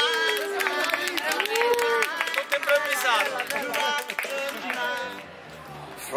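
A group of voices talking, laughing and singing over each other, with sharp hand claps among them. The voices drop away near the end.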